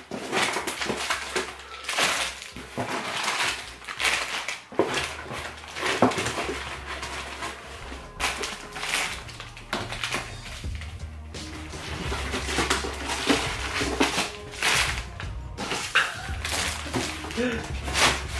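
Plastic snack wrappers crinkling and rustling, with irregular knocks of packets and cardboard, as snacks are pulled out of a cardboard box and dropped onto a pile; background music runs underneath from about five seconds in.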